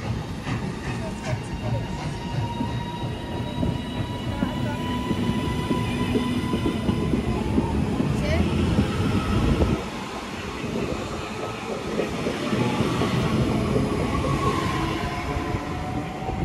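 Northern Class 331 electric multiple unit running along the platform close by, with a rumble of wheels on rail under a thin steady whine from its electric traction equipment. The sound drops suddenly about ten seconds in, then the train noise builds again.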